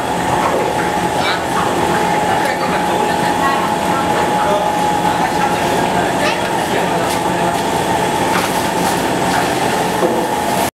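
Roller (calender) heat transfer sublimation machine running: a steady mechanical drone with a constant high whine, broken by scattered light clicks.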